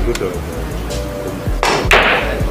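Pool cue striking the cue ball for a hard bank shot, then the ball knocking off the table's cushions, over faint background music. Near the end a louder burst of crowd noise swells up.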